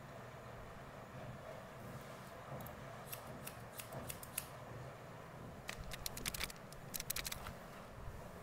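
Hairdressing scissors snipping through sections of wet hair: a run of quick clips about three to four seconds in, then a denser run around six to seven seconds in.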